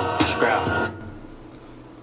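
Excerpt of a rap song played back: a rapping voice over the track, dropping away about a second in.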